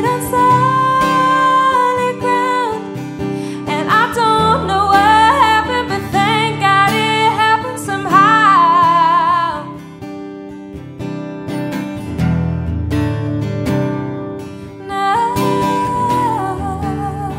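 A woman sings a long held note and then melodic runs with vibrato over strummed and plucked acoustic guitar. The voice stops about ten seconds in, leaving the guitar playing alone, and comes back in near the end.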